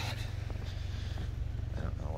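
Footsteps crunching in fresh snow, a few inches deep, over a steady low rumble.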